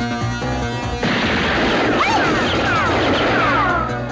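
Soundtrack music, then about a second in a loud crash of noise takes over for nearly three seconds, with several short falling whistle-like tones running through it.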